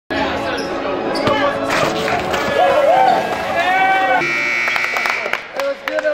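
Basketball gym noise: balls bouncing on the court and voices echoing in a large hall, with a steady buzzer-like tone for about a second just past the middle.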